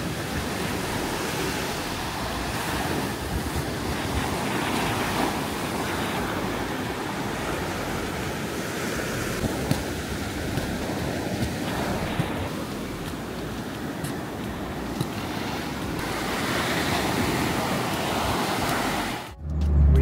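Big ocean waves breaking and washing up a sandy beach: a steady rushing surf that cuts off suddenly near the end.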